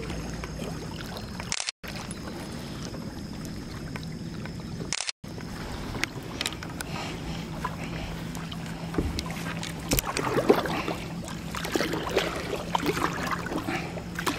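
A kayak being paddled through calm water: paddle dips, drips and small knocks against the boat, heard from the bow, busier in the second half. A steady low hum runs underneath, broken twice by a brief gap of silence early on.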